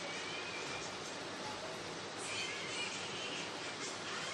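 Steady hiss of background noise, with a faint high wavering tone about halfway through.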